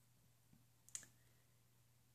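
Near silence: faint room tone with a low steady hum, broken by one short, sharp click about halfway through.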